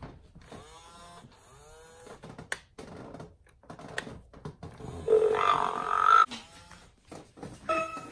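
Playskool Kota the Triceratops animatronic toy making recorded dinosaur sounds through its speaker when its cheek is pressed. Several short sliding calls come near the start, and a louder drawn-out call comes about five seconds in, with a few more sliding calls after it.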